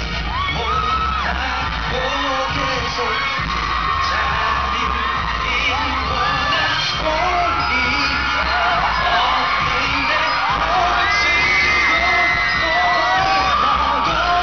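Live K-pop dance track played loud through a concert sound system, with a heavy pulsing bass beat. Many high-pitched screams from fans rise and fall over the music throughout.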